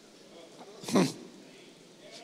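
A man's short vocal sound through the microphone about a second in, one quick falling exclamation with a breathy edge, over faint room tone.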